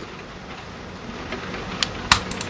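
Computer mouse button clicking sharply a couple of times near the end, over a steady low background hiss.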